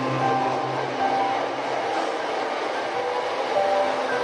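Slow relaxing piano music, single held notes at changing pitches, over a steady rushing noise bed.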